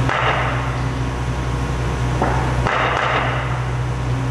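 Steady low hum of a large indoor hall, with two short hissy bursts of noise, one at the start and one a little past the middle.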